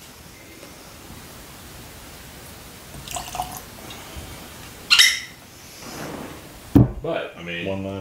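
Whisky being poured from a glass bottle into a small tasting glass, a faint trickle, then a sharp knock near the end as the bottle is set down on the wooden table. A man's voice follows briefly.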